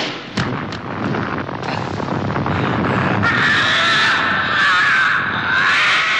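Dubbed creature sound effect: a monster's loud, wavering, high-pitched screech starting about three seconds in, after a noisy stretch of fight sound effects with a few thuds.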